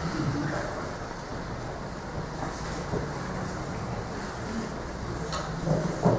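Steady background room noise in a hall: a low hum under a faint even hiss, with no speech.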